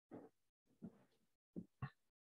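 Near silence, broken by about five faint, short, low sounds.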